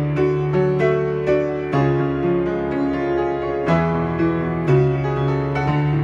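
Solo Yamaha piano playing a two-handed arrangement of a pop song: melody notes and chords struck about every half second over held bass notes.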